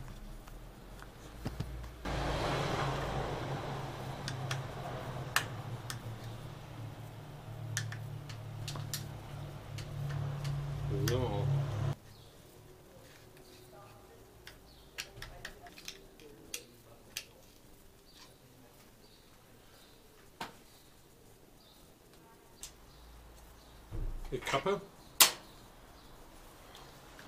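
Scattered clicks and light metallic knocks from hand work on a bicycle's handlebar shift lever and shift cable, with a louder cluster of knocks near the end. A steady low hum with hiss runs under the first part and stops abruptly about twelve seconds in.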